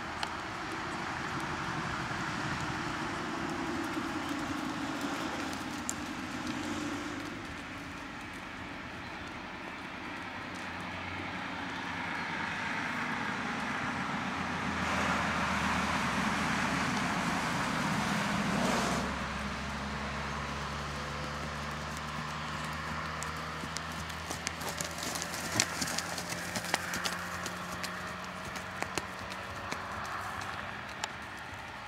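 Hoofbeats of a horse working on a sand dressage arena. Midway a vehicle passes, the loudest sound of the stretch, ending abruptly; after it a steady engine hum continues, its pitch creeping slowly upward, while sharp hoof ticks come through near the end.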